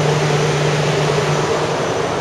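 Randen (Keifuku Electric Railroad) tram at the station platform, a steady loud noise of the running car with a low hum that stops about a second and a half in.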